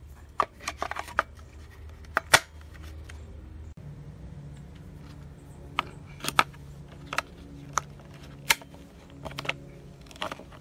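AA rechargeable batteries being pushed into a trail camera's plastic battery compartment against its spring contacts: a string of sharp plastic clicks and clacks, about a dozen in all, the loudest a little over two seconds in.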